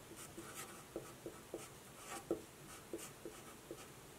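Faint squeaks and scratches of a Sharpie felt-tip marker on paper in a string of short pen strokes as a formula is written out by hand.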